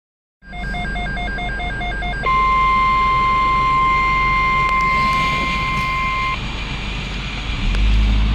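Midland NOAA weather radio sounding an alert: a rapid string of beeps for about two seconds, then the steady 1050 Hz NOAA Weather Radio warning tone for about four seconds before it cuts off. This signals an incoming severe weather bulletin. A low steady hum from the car runs underneath.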